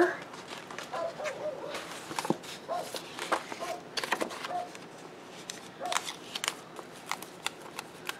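Paper planner pages rustling and clicking as they are pushed back onto a disc-bound planner's rings and smoothed flat by hand: a string of faint light clicks and paper handling sounds. A few faint short tones come and go in the first half.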